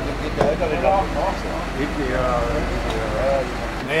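Men's voices talking over a steady low rumble from a truck engine running.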